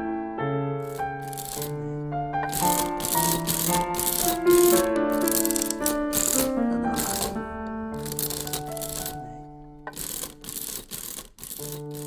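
Hand-cranked mechanical printing adding machine clattering in runs of quick strokes, about three a second, over soft piano music.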